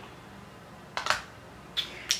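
Quiet room tone with two brief handling sounds, small rustles or clicks, about a second in and again near the end, as makeup items are handled.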